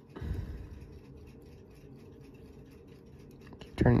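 Soft scratchy rubbing and handling noise from a toothpick and fingertips working at the balance and hairspring of a small pocket-watch movement. It is loudest for about the first second, then fades to a low hiss.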